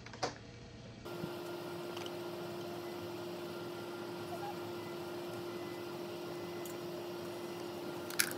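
A steady hum with one constant tone over an even hiss, starting abruptly about a second in. A faint click or two comes just before it.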